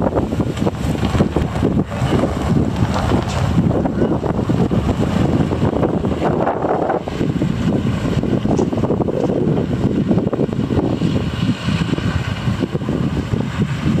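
Wind buffeting the microphone in uneven gusts, with a low rumble underneath.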